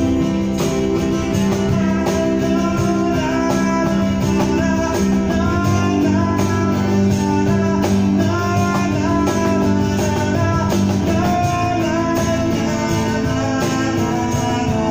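A live band playing an instrumental guitar passage: electric and acoustic guitars over steady percussion.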